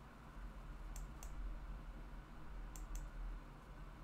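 Two pairs of sharp computer mouse clicks, the two clicks of each pair about a fifth of a second apart, faint over a low steady hum.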